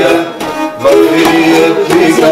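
Pontic lyra (kemençe) playing a folk tune. The playing drops briefly about half a second in, then holds a long note.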